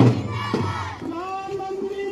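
A group of schoolchildren chanting a slogan together in unison, their voices held on long drawn-out notes.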